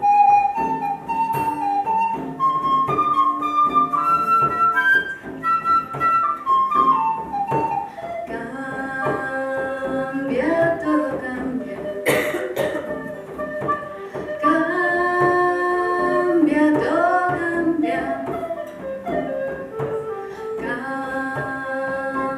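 Live acoustic folk music with no singing: a flute plays a stepping melody over a strummed acoustic guitar and a hand-played frame drum. A short noisy burst sounds about halfway through.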